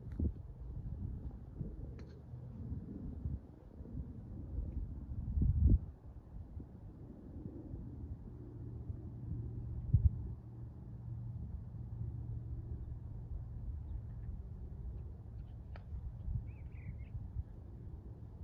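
Wind buffeting the microphone: a low, uneven rumble with a strong gust about five and a half seconds in and a low thump about ten seconds in. A short bird chirp comes near the end.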